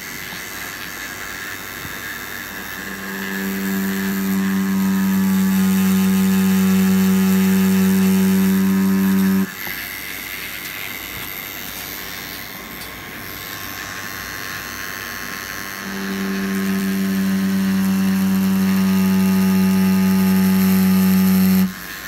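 Cartridge tattoo machine with a 5RL needle, set at about 7 volts, buzzing steadily while lining on oiled practice skin. The hum swells about three seconds in and drops off suddenly near the middle, then swells again about two-thirds through and cuts off just before the end, staying softer in between.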